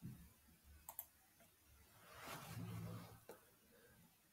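Near-silent room with a few light computer mouse clicks: two close together about a second in and one more near the end. A soft rustling swell of about a second falls between them.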